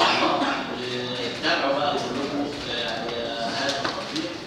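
Indistinct talking in a meeting hall: voices run through the whole stretch without one clear speaker, louder at the very start.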